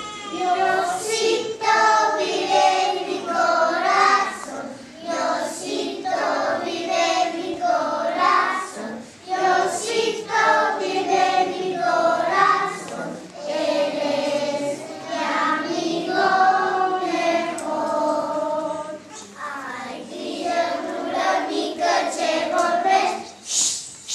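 A group of young children singing together in sung phrases.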